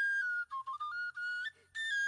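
Background music: a single high, whistle-like melody line, a held note that steps down and back up, then after a short break a second long held note.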